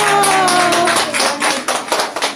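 A small group of people clapping hands, with one voice holding a long note that slides down in pitch and stops about a second in.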